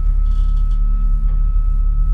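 Steady, loud low rumble with a thin high whine held over it, a drone-like soundscape under the opening logo of a music video.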